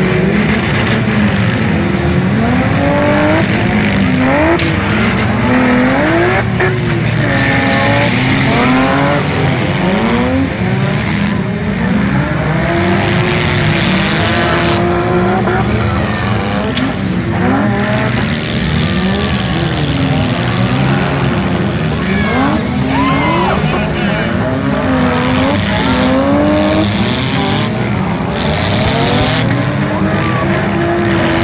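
Engines of several gutted compact demolition-derby cars revving hard at once, their pitches rising and falling over one another without a break as the cars accelerate, reverse and ram.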